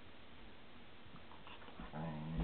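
A husky and a white German shepherd play-fighting, heard faintly: low scuffling and quiet dog noises.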